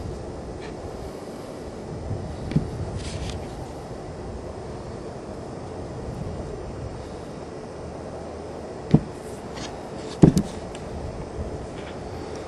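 Steady low background rumble with a few short, soft knocks, one a couple of seconds in and two near the end, as a hand-held fossil rock is handled and moved in front of the microphone.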